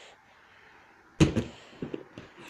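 A boy landing on a foam crash mat after jumping down from a high breeze-block wall: one heavy thump about a second in, after a moment of quiet, followed by a couple of faint knocks.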